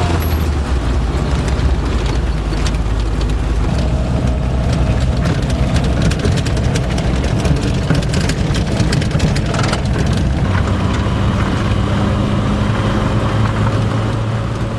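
Car driving, heard from inside the cabin: a steady low engine hum that steps in pitch a couple of times, under road noise and scattered small knocks and rattles.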